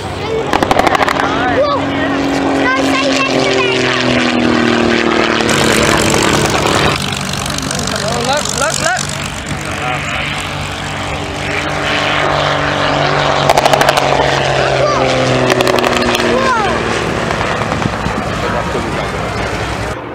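Messerschmitt Bf108 Taifun's piston engine on low display passes, its pitch dropping as it goes by, twice: once a few seconds in and again near the end. Under the passes there is a steady engine drone, with people talking over it.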